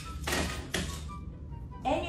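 A bunch of keys clattering against the wall as they are hung on a wall key hook: one brief clatter lasting about half a second.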